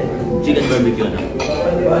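Cutlery clinking and scraping against plates and bowls as several people eat at a table, over chatter and background music.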